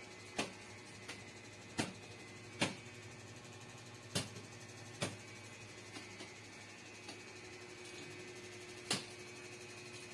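Faint steady hum with a few held tones, broken by about ten sharp, irregularly spaced clicks and knocks. The loudest come about two and a half, four and nine seconds in.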